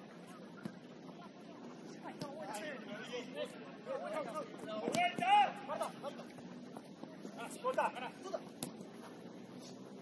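Players calling and shouting to one another in short, scattered bursts during a football game, heard from a distance over the open pitch. The loudest call comes about five seconds in, and a few faint sharp knocks are mixed in.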